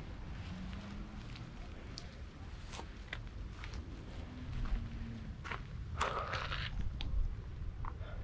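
Footsteps crunching on a rough, stony path: irregular light crunches and clicks, with a longer scrape about six seconds in, over a low steady rumble.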